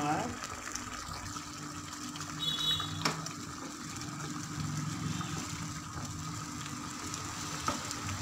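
Masala gravy simmering and bubbling in a pan, under a low steady hum, with a single sharp click about three seconds in.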